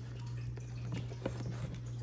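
Faint scattered clicks and taps of a charger plug being handled in a panel-mount charging socket on a metal ammo can, over a steady low hum.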